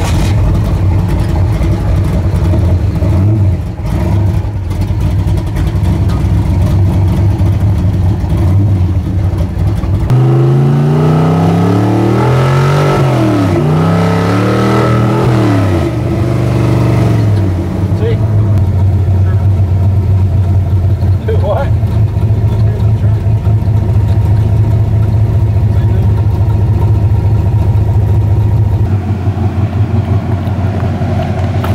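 Loud engine of a hot-rod car, apparently a high-compression 355 small-block V8, heard from inside its cabin while driving: a steady drone, then revving up and dropping back several times in a row from about ten seconds in, before settling back to a steady cruise.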